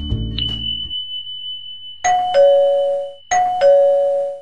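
Music with a beat stops about a second in. Then a doorbell-style ding-dong chime sounds twice, just over a second apart, each a higher note dropping to a lower one, over a thin steady high tone.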